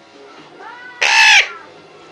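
Female Eclectus parrot calling at a hand in what the owner takes for begging behaviour. A quieter rising note leads into one loud squawk about a second in, lasting about half a second.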